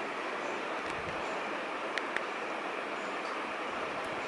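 Steady background hiss with two faint clicks close together about halfway through.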